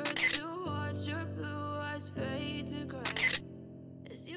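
Background music with a camera shutter click sounding twice, once at the very start and again about three seconds in.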